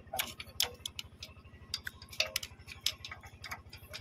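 Metal clicks and taps of a ring spanner and screwdriver working the rocker-arm adjusting screw and locknut while the valve tappet clearance of a power tiller diesel engine is set. The clicks are irregular, several a second, over a faint steady low pulsing hum.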